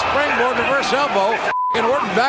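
Voices over the broadcast, cut about one and a half seconds in by a short steady high beep that blanks out all other sound: a censor bleep.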